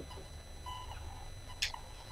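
Quiet meeting-room tone with a low steady hum. About one and a half seconds in there is one brief, sharp high-pitched sound.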